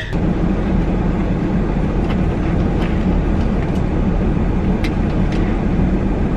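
Steady noise inside the cabin of an idling minivan, its engine and heater running against the cold, with a few faint clicks.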